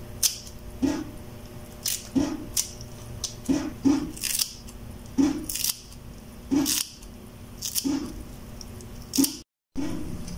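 Kitchen scissors snipping spring onion stalks into small pieces: over a dozen crisp snips at uneven intervals, roughly one or two a second. The sound drops out briefly just before the end.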